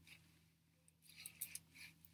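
Faint, light clicks and rustle of a rhinestone necklace's stones and chain being handled on a tabletop, starting about a second in.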